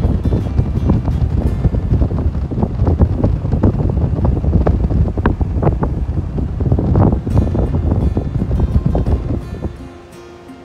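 Wind buffeting the microphone: a loud, low, uneven rumble that stops just before the end, with background music underneath.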